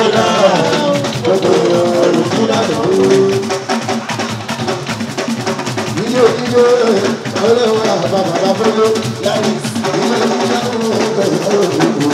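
A live Fuji band: a man sings into a microphone in long, bending phrases over a steady beat of hand drums and percussion.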